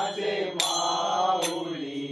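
Devotional aarti chant sung in long held notes, with a ringing metal percussion strike about every 0.8 seconds, twice here.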